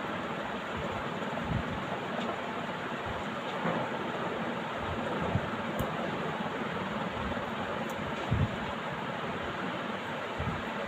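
Steady background noise with a few soft, low thumps and a faint click; the loudest thump comes near the end.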